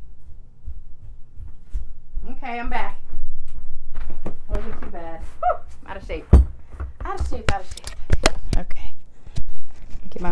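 A person's voice speaking indistinctly, away from the microphone, followed by a run of sharp knocks and clicks, the loudest thump about six seconds in.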